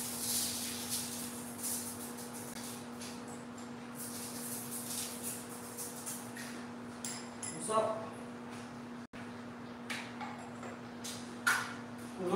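Salt shaken out in short rattling sprinkles, most heavily in the first second and then in scattered bursts, over a steady low hum. A couple of brief voice sounds come near the end.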